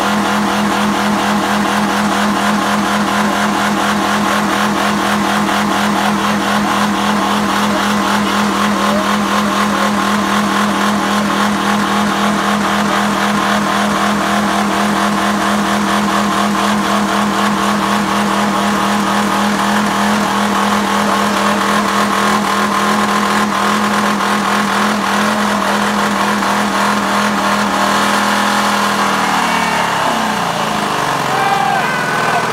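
Honda Accord engine held at a steady high rev, with Mountain Dew and PBR beer in its crankcase in place of oil and its coolant drained, being run until it fails. Near the end the revs fall away.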